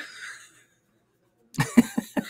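A person laughing in short breathy bursts. One burst at the start trails off, then comes about a second of silence, then a few quick laughing bursts near the end.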